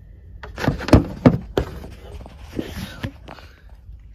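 Handling noise from an inkjet ink cartridge and the open printer. A cluster of sharp plastic clicks and knocks comes about a second in, followed by rustling and a few lighter clicks.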